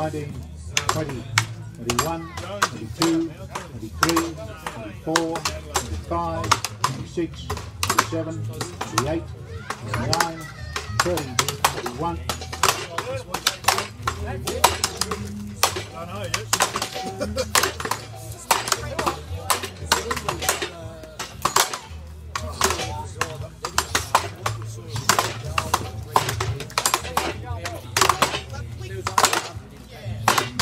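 Several axes chopping upright standing blocks at once. The strikes come irregularly and overlap, several a second, throughout.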